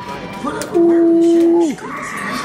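A person's voice holding one steady note for about a second, like a sung or hummed "ooh", gliding up into it and dropping off at the end.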